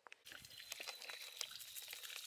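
Faint scattered clicks and small clatters of loose creek-bed stones as a rock is picked up from the gravel, over a faint outdoor hiss.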